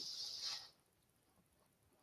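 Near silence in a pause between sentences: a faint hiss for about the first half second, then dead quiet.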